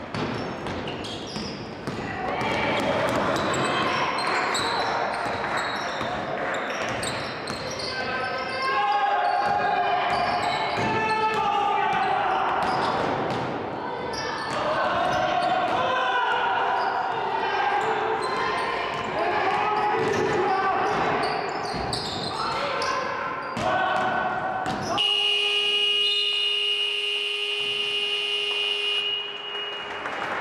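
Basketball dribbled on a hardwood gym floor with players' and coaches' voices echoing in a large hall. Near the end, a steady electronic game horn sounds for about four seconds, signalling the end of the quarter.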